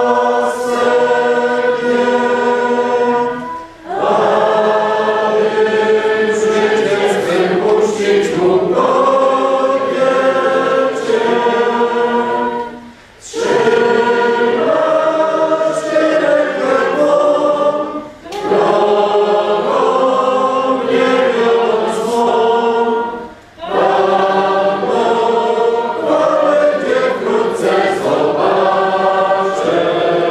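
A choir singing in sustained, many-voiced phrases, broken four times by short pauses between lines.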